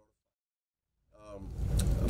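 Dead silence, a dropout in the audio, for about the first second, then a man's voice fades back in, talking.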